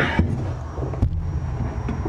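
Low handling rumble from a camera being moved about, with a single sharp click about a second in.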